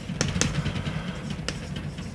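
Chalk writing on a blackboard: a few sharp taps of the chalk against the board over a low, steady rumble.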